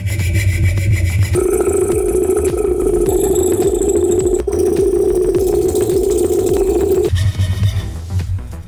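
Coping saw blade cutting through a thin wooden board along a curved line, with background music over it.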